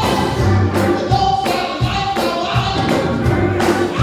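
Gospel choir singing with band accompaniment, a bass line and a steady beat of about two to three strikes a second.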